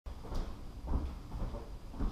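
A few dull knocks and thumps, about three in two seconds, over a low rumble.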